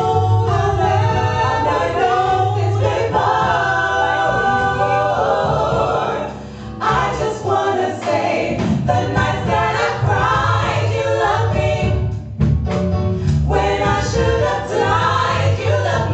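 Women's vocal group singing a gospel song in harmony into microphones, with a short break between phrases about six and a half seconds in.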